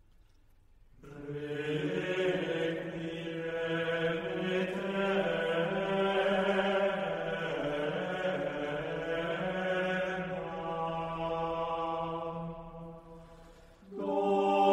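Unaccompanied voices singing a Renaissance Requiem setting: one slow, sustained phrase that begins about a second in and fades away near the end, with the next phrase entering just at the close.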